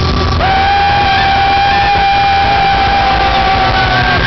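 Live Celtic rock band playing, with one high note held steady from about half a second in until the end, over the full band.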